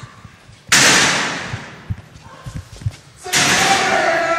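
A sudden loud crash that dies away over about a second and a half, then a few soft thumps. Near the end a voice cries out.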